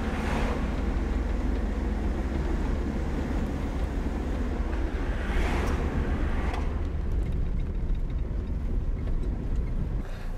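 Car engine and road noise heard from inside the moving car's cabin: a steady low rumble with a hiss above it that swells briefly near the start and again about halfway through.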